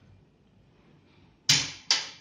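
Two sharp clacks under half a second apart, each dying away quickly: the smart bookcase's electric cabinet door lock releasing as a cabinet is opened.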